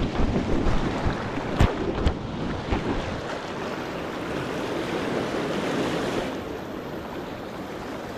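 Fast river water rushing over rapids, a steady noise, with wind buffeting the microphone during the first few seconds. Two sharp knocks come about a second and a half and two seconds in.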